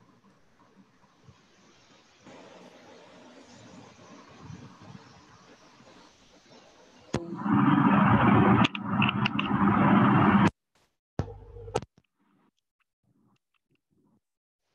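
Open microphone noise on a video call: faint hiss, then, after a click about seven seconds in, a loud noisy rush from a newly unmuted participant's microphone that cuts off abruptly after about three seconds, followed by one shorter burst.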